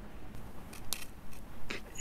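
Faint crisp clicks and cracks, about four spread through, of a dalgona honeycomb candy being worked apart.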